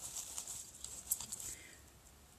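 Faint rustling and a few light taps of small sewing notions being rummaged through inside a fabric pouch, dying away after about a second and a half.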